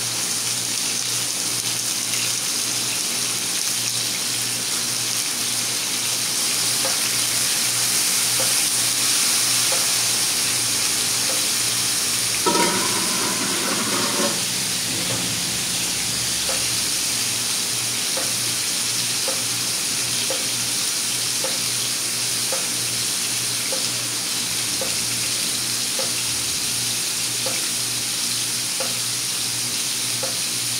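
Meat sizzling steadily in hot fat on a plough-disc griddle over a gas burner. A brief pitched sound lasting about two seconds comes about halfway through.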